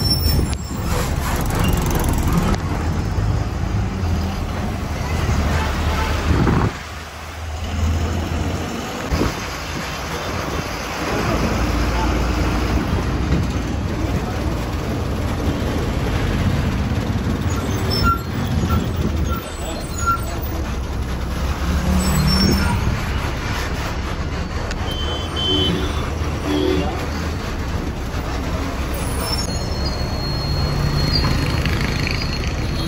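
Ride noise heard from inside a moving city bus: the engine running with a steady low rumble under road and tyre noise, and busy street traffic outside.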